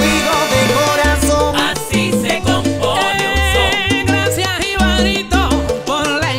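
Salsa music with a repeating bass line; wavering held notes come in higher up about three seconds in.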